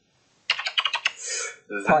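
Rapid typing on a computer keyboard, a quick run of key clicks starting about half a second in and lasting just over a second.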